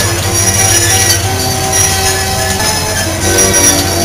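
Carousel music playing: a string of held, pitched notes over a steady low hum from the ride.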